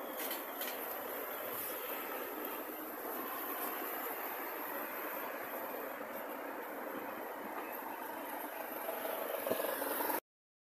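Steady rushing noise of wind on the microphone and street traffic during a mobility scooter ride along a city street.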